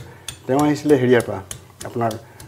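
Kitchen utensils clinking and tapping in short, sharp knocks about two or three times a second, with a man talking over them.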